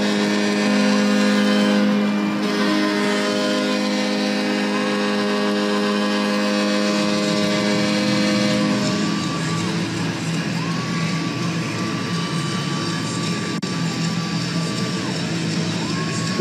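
Arena goal horn sounding one long steady blast over a cheering crowd after a home goal, stopping about seven to nine seconds in. Goal music then plays as the crowd keeps cheering.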